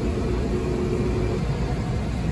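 Steady low mechanical rumble with a faint steady hum, unchanging in level.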